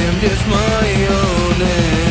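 Heavy metal recording: distorted guitars and drums playing steadily, with a melodic line that slides and wavers over the top.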